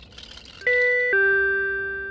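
Two-note ding-dong doorbell chime: a higher note about two-thirds of a second in, then a lower note that rings on and fades away.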